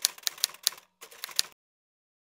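Typewriter key-strike sound effect: a quick, slightly uneven run of sharp clicks, about five or six a second, that stops about one and a half seconds in.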